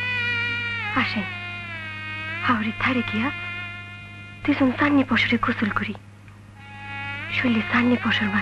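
Long held melodic notes that slide slowly in pitch, alternating with short voiced phrases, over a steady low hum.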